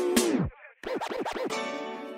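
Turntable scratching of a held sampled note in a hip-hop beat. The note's pitch drops away about half a second in. After a short break, about four quick scratch strokes sweep the pitch up and down, and the note then fades.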